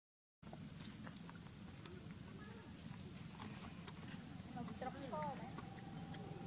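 Faint outdoor background with scattered small clicks, then a brief run of short, arching squeaky animal calls about five seconds in.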